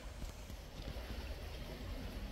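A shallow woodland stream trickling faintly, under a steady low rumble with soft, irregular low knocks.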